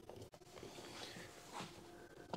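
Quiet workshop room tone with faint handling noise: a few soft taps and a light knock about three-quarters of the way through, fitting a screwdriver being set down on a wooden workbench.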